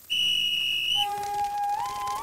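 A whistle blown once, a steady high note about a second long, as a signal to send a team off. Music with held and sliding notes follows.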